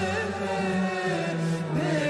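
Turkish classical song in makam Hicaz: a female voice singing an ornamented, wavering melody over a steady low accompaniment from a Turkish classical music ensemble.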